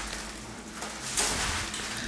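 Plastic snack packaging crinkling and rustling as it is handled, fairly quiet, with a brighter rustle a little over a second in.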